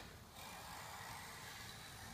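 Small hand plane shaving down the wooden leading edge of a wing: a faint, steady hiss of the blade cutting along the edge, starting about half a second in.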